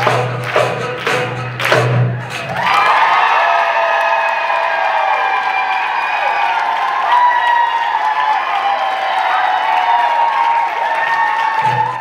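A jingled frame drum struck in a fast rhythm over a low backing drone, which stops about two and a half seconds in. An audience then cheers and applauds, and the sound cuts off at the end.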